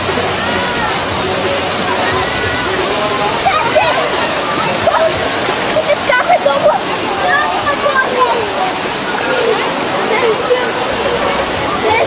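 Steady rush of water, with scattered voices calling and talking over it.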